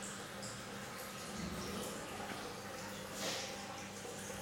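Peristaltic dosing pump running quietly with a low steady hum while dosing pH-down into the nutrient tank; a brief soft rustle about three seconds in.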